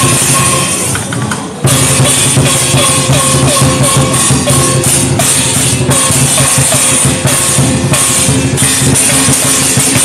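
Chinese dragon dance percussion: a big drum beaten steadily with cymbal crashes in a regular rhythm, loud. The playing dips briefly about a second in, then comes back in suddenly at full loudness.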